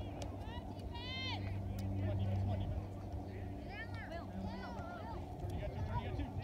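Distant voices shouting and calling across a sports field, heard faintly about a second in and again around four to five seconds in, over a steady low hum.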